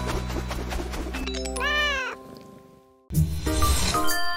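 A cartoon cat's single meow, rising then falling in pitch, about a second and a half in, over the sustained chords of a music track. The music fades to a brief silence, and a new music track starts abruptly about three seconds in.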